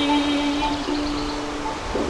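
Small wooden harp played alone between sung lines: plucked notes ring and fade, and a fresh note is struck near the end.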